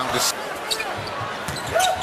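Basketball game broadcast sound: steady arena crowd noise with a few short knocks of a basketball bouncing on the hardwood court.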